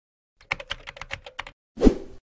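Logo-animation sound effects: a quick run of about ten sharp clicks like typing on a keyboard, then a short whoosh with a low thump near the end.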